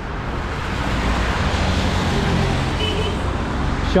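Road traffic on wet asphalt: tyres hissing on the wet road over a low engine rumble, swelling slightly about a second in as a vehicle passes.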